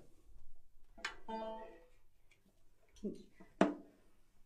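A plucked-string instrument, banjo or ukulele, sounded as it is picked up: one ringing note or chord about a second in, then two short sharp strums or knocks near the end, the second the loudest.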